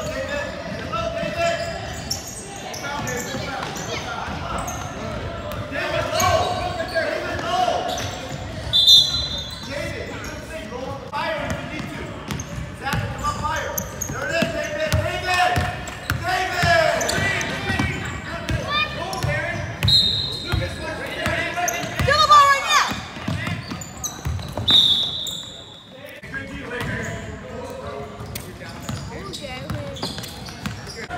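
A basketball being dribbled on a hardwood gym floor, repeated bounces echoing in a large hall, with spectators talking and calling out over it. Three brief high-pitched tones sound about 9, 20 and 25 seconds in.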